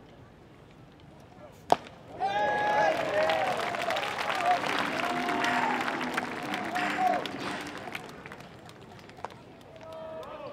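A single sharp crack as the pitched baseball reaches home plate, followed about half a second later by many voices shouting and cheering together for about six seconds, fading away near the end.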